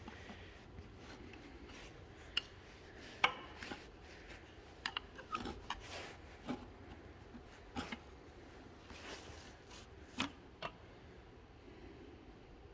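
Flat-blade screwdriver prying and working a cover up off its studs: faint scattered clicks and scrapes, with a handful of sharper taps.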